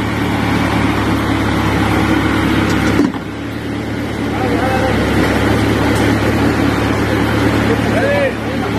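A heavy engine running steadily with a low drone, and people's voices calling over it. The sound breaks off abruptly about three seconds in, then the same drone carries on.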